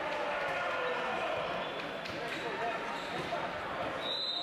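Voices of players and spectators chattering in a large sports hall, with a few thumps of a volleyball bouncing on the court floor.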